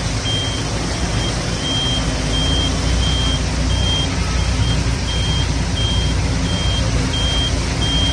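A vehicle's electronic warning beeper sounds a high beep about three times every two seconds. Under it runs a steady loud wash of heavy rain and floodwater with a low engine rumble.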